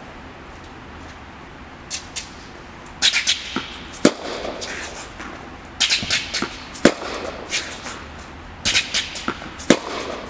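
Tennis balls struck on backhands, sharp racket hits about every three seconds (the strongest near 4, 7 and just before 10 s), mixed with smaller clicks and squeaks from ball bounces and footwork on the hard court.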